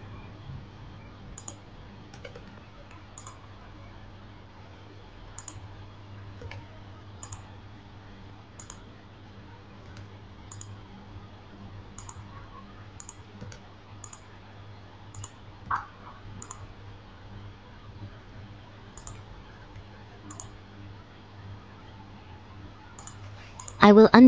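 Scattered computer mouse clicks and key presses, a short faint click every second or so, with two slightly louder clicks, over a steady low hum.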